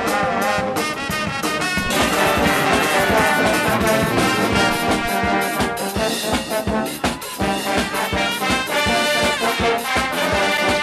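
Brass band music: trombones and trumpets playing a tune over a regular beat.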